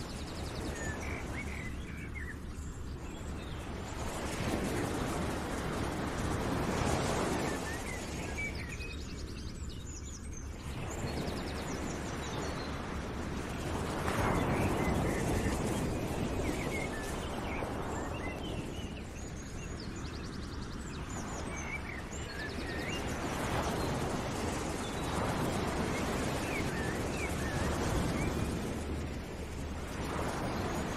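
Nature ambience: a rushing noise that swells and fades every few seconds, with birds chirping throughout.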